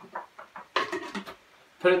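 A few short clinks and knocks as ice cubes go into a blender jar and the lid is set on.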